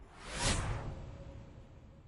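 One whoosh sound effect for a logo transition. It swells to a peak about half a second in and then fades away.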